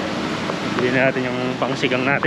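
A person's voice, with steady street noise behind it.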